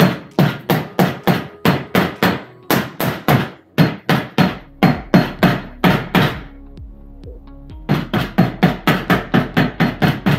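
Rubber mallet striking an airless 10-inch tyre to seat it onto its wheel hub: a run of sharp blows, two to three a second, that breaks off for over a second after about six seconds, then starts again.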